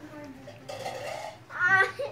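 A child's short wordless vocal sound, rising in pitch, about a second and a half in.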